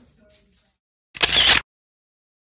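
A camera shutter sound effect: one loud snap lasting about half a second, a little over a second in, cut in between stretches of dead silence.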